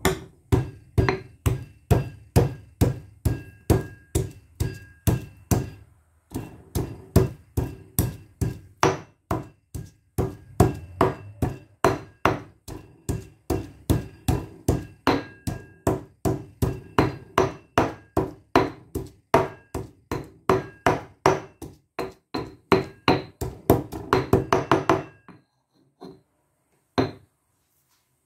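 Stone pestle pounding in a stone mortar, crushing a soft yellow ingredient to a mash: steady sharp strikes about three a second with a faint ringing of the stone. A brief pause about six seconds in, quicker strikes near the end, then it stops.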